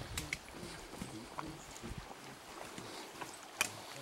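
Backpackers walking on a forest trail: irregular soft footfalls with small clicks and knocks from their packs and gear, and a sharper click near the end.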